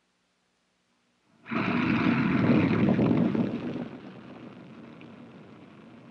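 Rocketdyne F-1 rocket engine test firing: a loud, even rushing noise cuts in suddenly about a second and a half in, then drops to a lower steady rumble after about two more seconds.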